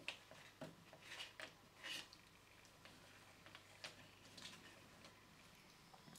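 Near silence, with a few faint, brief clicks and rustles from gloved hands handling a plastic wall switch plate and its small plastic tubing.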